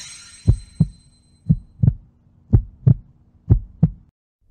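Heartbeat sound effect: four lub-dub double thumps, about one pair a second, over a faint low steady drone that cuts off abruptly at the end.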